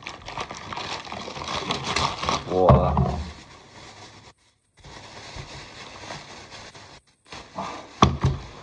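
Paper and plastic bags crinkling and rustling as food is taken out of them, busiest in the first couple of seconds. A short vocal sound from the man comes near the middle, and the sound cuts out briefly twice.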